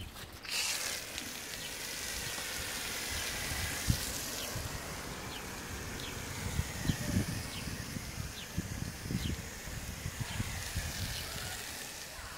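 Garden-hose foam cannon (Foam Blaster 6) on its medium foam setting spraying foam onto a car body: a steady hiss of water and foam that starts about half a second in, with a few low knocks along the way, the sharpest about four seconds in.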